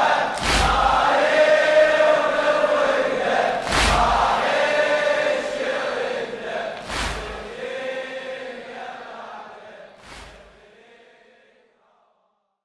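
A Shia mourning elegy (latmiya) chanted by male voices, with a heavy beat about every three seconds, fading out to silence near the end.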